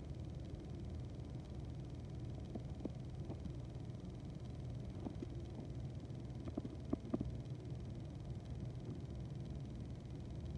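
Quiet room tone: a steady low hum, with a few faint clicks about five to seven seconds in.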